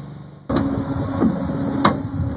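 An electric dirt bike pushed by hand onto a flatbed tow truck's metal deck: clattering and knocks over a steady hum, starting suddenly about half a second in, with one sharp knock near the end.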